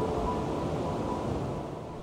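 Ocean surf breaking, a steady rush of waves, with faint held music notes underneath.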